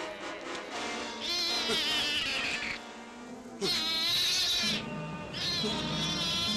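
Cat yowling three times in long, wavering cries, the middle one loudest, over background music.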